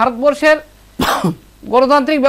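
A man speaking, cut off about a second in by one short, sharp cough to clear his throat, then talking again.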